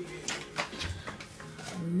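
An oven door being handled and pulled open: a few light clicks and one soft low thump.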